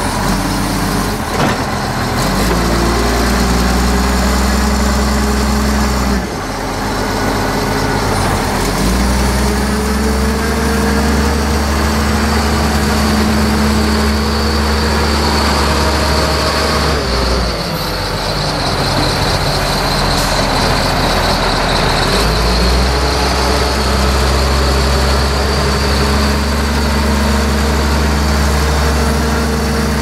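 Wheel loader's diesel engine running under load, its note rising and falling in steps every few seconds as the throttle changes.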